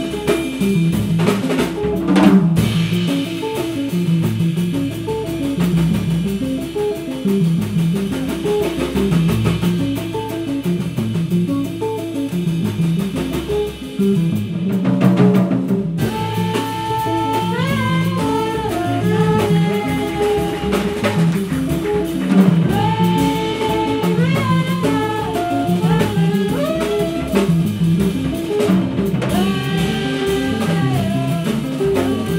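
A live jazz band playing: drum kit and double bass keep a steady groove under guitar, and a sustained melody line with slides comes in about halfway through.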